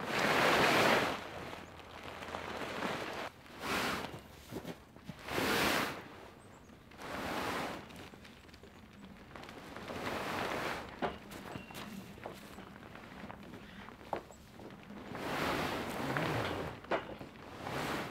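Heavy canvas garage cover rustling and swishing in a series of separate bursts as it is pulled and handled over the steel frame, the first the loudest, with footsteps in snow.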